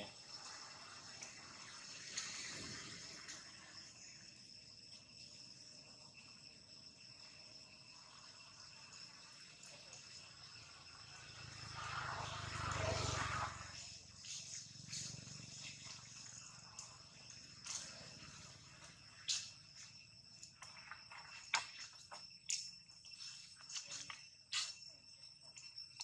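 Steady high-pitched drone of crickets or cicadas. Scattered sharp crackles and rustles of dry leaves come through the second half, with a louder swell of sound about twelve seconds in.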